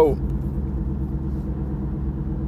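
Steady low mechanical rumble and hum, even in level throughout.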